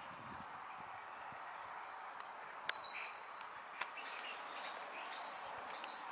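Outdoor garden ambience: small birds chirping and calling, short high calls scattered over a steady background hiss of distant noise, more frequent in the second half.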